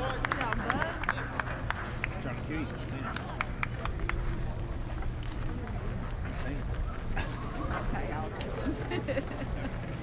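Spectators chattering in a ballpark's stands, with scattered handclaps that are thickest in the first few seconds, over a steady low rumble.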